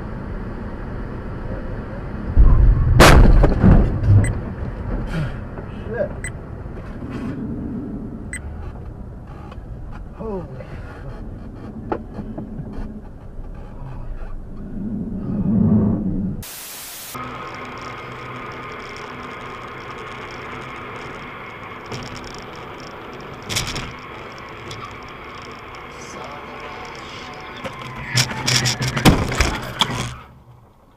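Dashcam audio from inside a moving car: steady road noise, broken about three seconds in by a loud crash impact with a low rumble. Several sharp bangs and knocks follow near the end.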